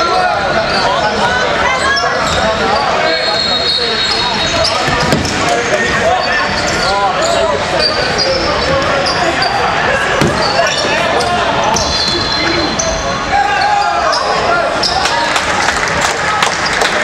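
Indoor basketball game sounds in a large gym: a basketball bouncing on the hardwood court, sneakers squeaking, and players and spectators calling out over one another throughout.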